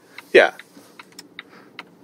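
A series of light, irregular clicks and ticks, a few each second.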